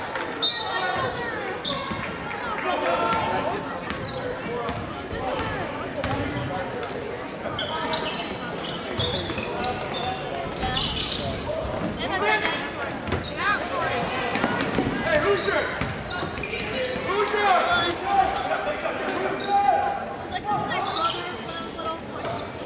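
A basketball being dribbled and bouncing on a hardwood gym floor during live play, with many voices of players and spectators echoing through the gym.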